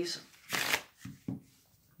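A deck of thick USPCC Stud playing cards being riffle-shuffled on a close-up pad: one short, crisp riffle of the cards about half a second in, then a soft click as the deck is squared.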